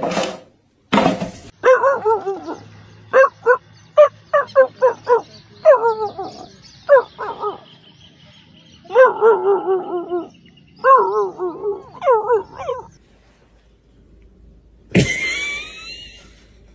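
Dog calls: a run of short yips, then two longer wavering howls. A couple of short noisy bursts come just before them, and a cat gives a brief rising yowl near the end.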